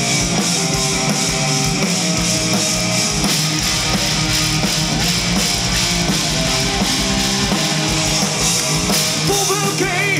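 Live rock band playing loud through a PA: electric guitars over a drum kit in a passage without vocals, with singing coming in near the end.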